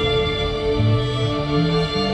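Symphonic folk metal band playing live: a calm passage of held chords, with a low line climbing in steps during the second half. It falls near the close of the song.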